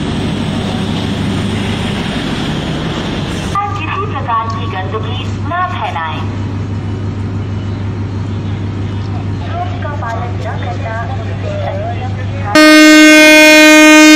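DEMU (diesel-electric multiple unit) train's diesel engine running with a steady low hum under scattered voices; near the end the train's horn sounds one loud, steady blast of about two seconds, the flag-off signal.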